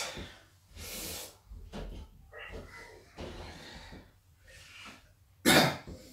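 A man breathing out hard while exercising: a short, noisy outward breath about a second in and a louder, cough-like one near the end, with fainter breath and movement noise between.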